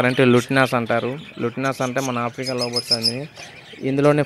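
A man talking, with a small cage bird giving a quick run of about six high chirps about two and a half seconds in.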